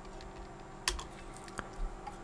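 A few separate computer keyboard keystrokes, sharp clicks scattered through about a second.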